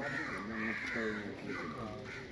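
Crows cawing several times.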